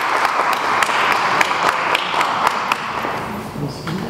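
Audience applauding, dense clapping that dies away about three seconds in.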